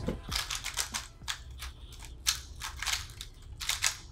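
Two 3x3 speedcubes being turned fast at the start of a timed solve: a rapid, irregular clatter of plastic clicks from the layers snapping round.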